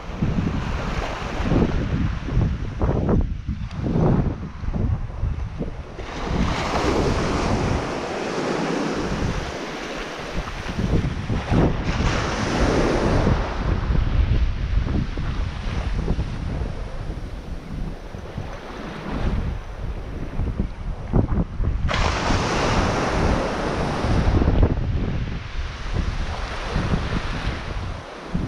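Small waves washing up a sandy beach, with wind buffeting the microphone. The rush of surf swells louder twice, about a quarter of the way in and again near the end.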